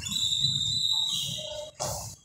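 A high-pitched steady tone lasting about a second, which drops to a slightly lower pitch for about half a second before stopping, followed by a short burst of noise near the end.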